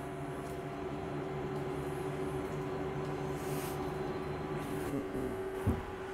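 Electric lift motor of a powered CT scanner patient table running with a steady hum as the table is raised, winding down and stopping just before five seconds in. A short knock follows soon after.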